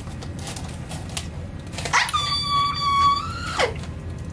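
Gift wrapping paper rustling as a small box is unwrapped, then a woman's high-pitched excited squeal for nearly two seconds, starting about two seconds in, rising at the start and dropping away at the end.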